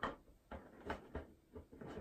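Plastic motorcycle windscreen being slid onto its mount by hand, with a few faint, irregular clicks and knocks of the screen against the mounting.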